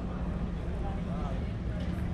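Street ambience: indistinct voices of people talking nearby over a steady low rumble.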